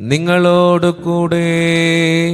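A man chanting a liturgical intonation in long notes held at nearly one pitch, the first sliding up into place at the start, with a short break about a second in. It is the chanted opening of the Gospel reading in a Syro-Malabar Qurbana.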